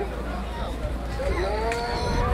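A long vocal call, human or animal, starts about a second and a half in, rising and then held on one note, over a steady low hum.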